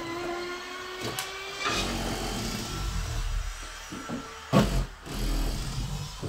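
A motor runs with a steady whine for the first couple of seconds, then gives way to a rougher machine noise broken by knocks, the loudest a sharp knock about four and a half seconds in: power tools at work on the staircase.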